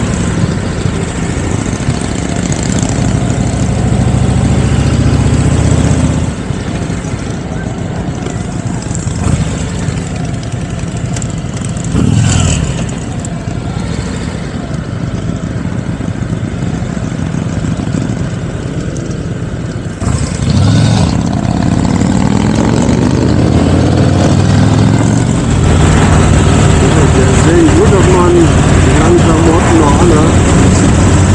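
Trike engine running while riding, with rushing air noise over it. The engine eases off about six seconds in as the trike slows, pulls away harder about twenty seconds in, and runs louder near the end.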